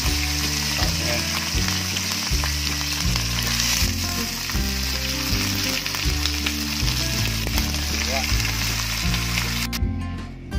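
Raw pork chunks sizzling loudly as they sear in hot oil and garlic in a wok, with a spatula stirring them now and then. The sizzle cuts off suddenly near the end.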